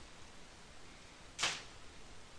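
A single brief swish about a second and a half in, over faint room hiss.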